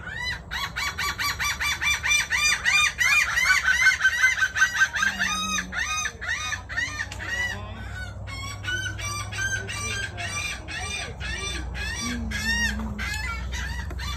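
Several birds calling noisily at once, each in rapid series of short, arched, high notes, several a second. The calling starts abruptly and is loudest in the first five seconds, then goes on a little quieter.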